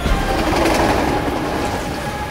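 Freight train rolling past on its rails, a dense rushing rumble of wheels on track that is loudest in the first second and a half and eases a little near the end.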